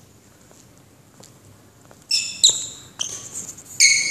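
Rubber-soled shoes squeaking on the hall floor: a quiet first half, then several sharp, high-pitched squeaks in quick succession over the last two seconds, with one short click among them.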